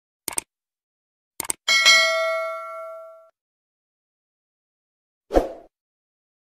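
Subscribe-button animation sound effect: two pairs of mouse clicks, then a bell ding that rings and fades over about a second and a half. A short thud comes near the end.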